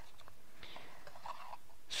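Faint rustling and scraping of a small cardboard box and paper leaflet being handled as the box is opened, over quiet room tone.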